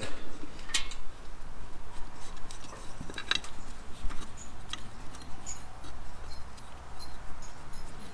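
Scattered light metallic clicks and clinks of valve-cover bolts being set and threaded in by hand on a Can-Am Ryker's aluminium valve cover.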